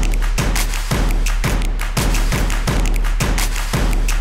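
Upbeat intro theme music with a heavy bass and a steady, driving beat of about two strong hits a second.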